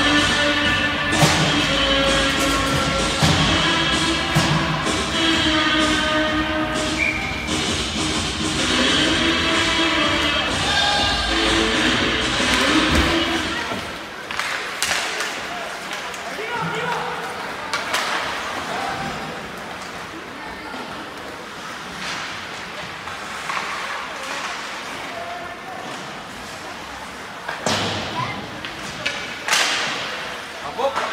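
Rink PA music playing during a stoppage in an ice hockey game, cutting off about 14 seconds in. After that come the scattered knocks and thuds of play: sticks and puck hitting the ice and boards, over the hum of the arena.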